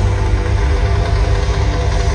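Live hard-rock band playing at full arena volume, recorded on a phone in the stands: a dense, steady wall of sound with heavy bass that smears the instruments together.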